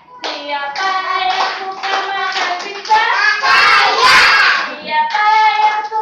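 A group of young children singing a song together, led by a woman, with hand clapping; it gets louder and more crowded about three seconds in.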